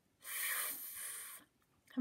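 A woman holding a voiceless "th" sound, tongue between the teeth and just blowing air, for a little over a second. It is the last sound of the word "with", said on its own to teach it.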